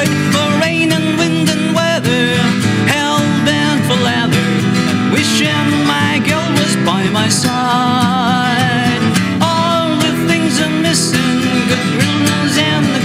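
Live acoustic band: two acoustic guitars, one a small Taylor GS Mini, strummed in a country-western song, with singing voices and hand claps.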